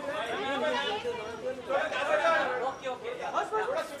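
Several people talking over one another: overlapping chatter of voices in a large room.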